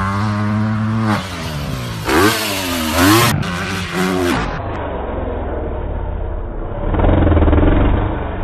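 Dirt bike engines revving, the pitch rising and falling again and again as the throttle is worked. After a cut about four seconds in, another dirt bike's engine runs more steadily and gets louder near the end.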